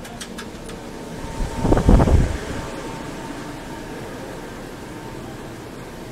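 Steady hum of a convenience store's fans and coolers heard through a police body camera's microphone. About two seconds in comes a short, loud burst of rustling and knocking close to the microphone.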